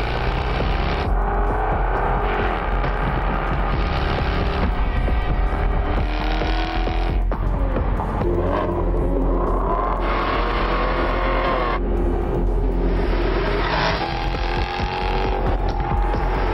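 Car-advert soundtrack: music mixed with the Jaguar XFR-S's supercharged V8 revving hard, its pitch climbing in long sweeps as it pulls through the gears. The sound changes abruptly at several edits.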